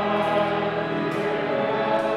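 Choir singing a hymn over sustained church organ chords.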